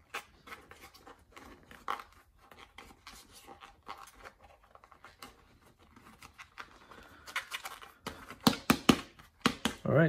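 Hands squeezing and working a rubber RC crawler tire with a foam insert inside, giving soft scratching and rubbing. Near the end comes a quick run of sharp clicks and knocks.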